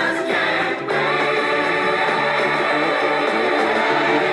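A song with sung melody and a backing choir over instrumental accompaniment.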